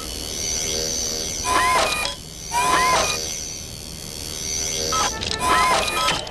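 Electronic scanning sound effect of a robot's listening dish: short chirps that sweep up and down, repeating three times, over an intermittent high warbling tone.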